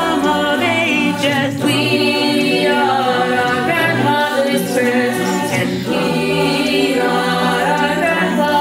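Mixed chamber choir of adult and youth voices singing a cappella in close harmony, with no instruments.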